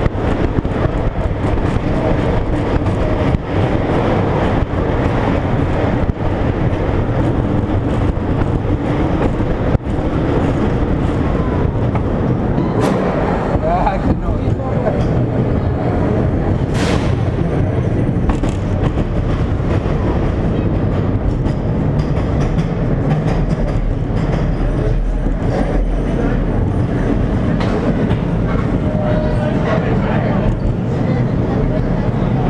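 Schwarzkopf steel roller coaster train running at speed along its track, with a steady loud rumble of wheels on steel rails and constant clattering.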